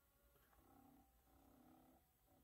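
Near silence: room tone, with two faint low hums, each about half a second long, in the middle.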